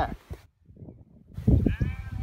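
A sheep bleating once, starting about a second and a half in. Before it, the tail end of a louder, closer bleat and a short moment of near silence.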